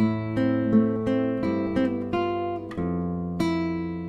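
Classical guitar fingerpicked in a slow arpeggio: a thumbed bass note rings under single treble notes plucked one after another, about two to three notes a second, with a new bass note struck near three seconds in.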